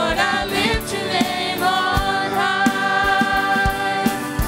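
Live church worship band playing a song: several women singing together over acoustic guitar, electric guitar and an electronic drum kit keeping a steady beat.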